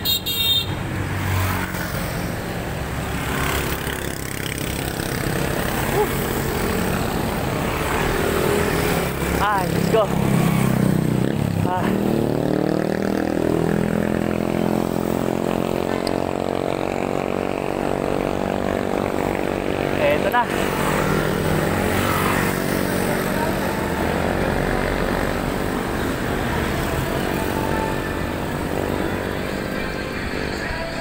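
Road traffic heard from a moving bicycle: a motor vehicle's engine drones steadily through much of the second half, its pitch slowly falling. Two brief chirps come at about a third and two-thirds of the way through, with voices now and then.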